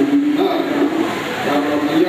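A man singing a devotional song into a microphone, holding long notes.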